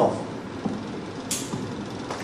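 Steady background noise with no clear source, and one short hiss a little over a second in.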